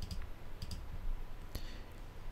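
A computer mouse clicking three times, with short separate clicks spread across two seconds over faint room noise.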